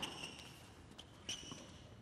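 Tennis rally on a hard court: a few sharp knocks of the ball being struck and bouncing, with brief high squeaks of tennis shoes on the court surface.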